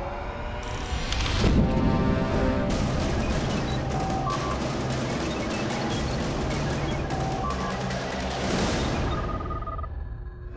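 Commercial sound design for on-screen ballistic computer graphics. A heavy hit comes about a second and a half in, then a dense run of rapid digital clicking with short electronic beeps at several pitches, over a music bed. It fades out near the end.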